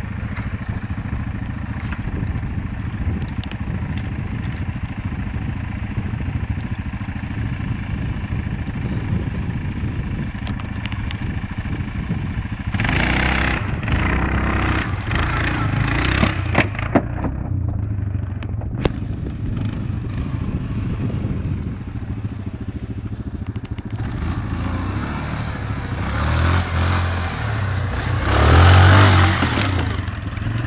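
Quad bike (ATV) engine running steadily at low revs, then revving up twice, the second time loudest near the end, as it pulls a box trailer out over a dirt mound, with scattered clicks and scrapes.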